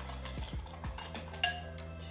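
Metal spoon clinking against a saucepan and mixing bowl while hot cream is spooned into beaten egg yolks and sugar, with one sharp ringing clink about one and a half seconds in and a few lighter clicks. Soft background music plays underneath.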